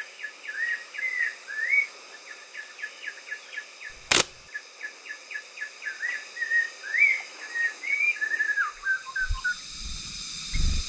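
Forest birds calling: a rapid, continuous run of short chirps and whistled notes. A single sharp click comes about four seconds in.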